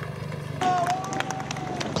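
Outdoor street ambience of a marathon course, picked up by the broadcast feed: a low steady hum with faint clicks, and one long held tone that starts about half a second in and stops just before the commentary resumes.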